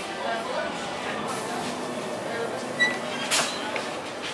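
Busy bakery workroom background: faint voices and a steady noise haze, with a couple of sharp clicks and a short high beep.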